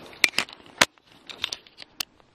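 Camera handling noise: fingers gripping and tapping the camera body near its microphone, giving a scattered series of sharp clicks and knocks that stop abruptly at the end.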